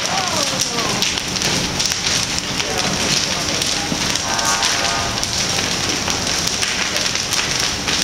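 A wooden house burning fiercely: a dense, steady crackling of burning timber.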